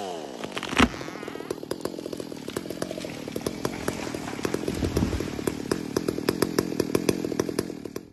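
Chainsaw dropping off the throttle to idle, then a sharp crack about a second in followed by a long run of snapping and cracking wood as the tree goes over, with a deep thud about five seconds in. The saw keeps idling underneath, and the sound cuts off suddenly at the end.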